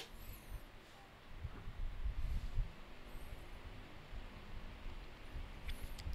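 Pedestal electric fan running at its second speed, its airflow picked up by a dynamic microphone fitted with its windscreen as a low, gusty rumble that grows louder about a second and a half in as the fan speeds up. A single click comes right at the start.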